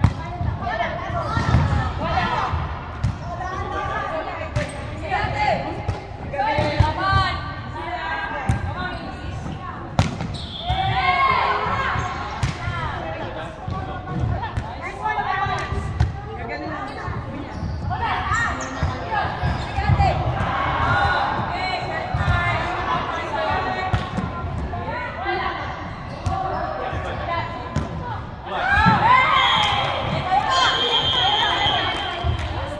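Indoor volleyball play in a large, echoing sports hall: the ball is struck by hands and slaps the wooden court in sharp knocks, under constant calling and shouting from players. Near the end the voices rise into a loud burst of shouting.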